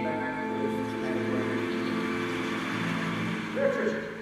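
Background music from a video soundtrack, long sustained notes held steady, with a short vocal sound about three and a half seconds in.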